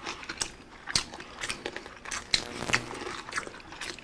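Close-up crunching and chewing of crispy bagnet (deep-fried pork belly), a series of irregular sharp crackles as the crackling skin is bitten through. The crunch shows the skin has stayed crispy even though the food arrived a while earlier.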